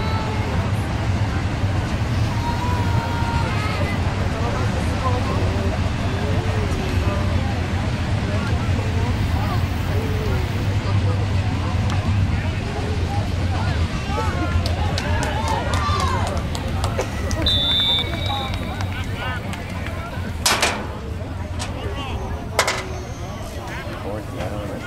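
Background chatter of spectators and players' voices at an outdoor youth football game, over a steady low rumble. Near the end there are two sharp knocks about two seconds apart.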